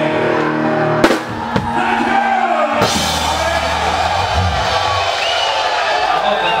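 Live rock band with drum kit playing the closing hits and held chords of a song, with one sharp loud hit about a second in. Near three seconds the band stops and crowd noise rises while the last low notes ring out.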